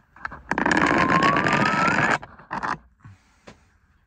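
Something scraped across a wooden workbench: a loud scrape about a second and a half long with a squeak rising in pitch, then two short knocks.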